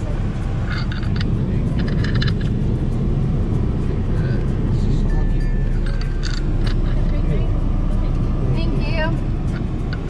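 Steady low rumble of a car idling, heard from inside the cabin, with music playing over it.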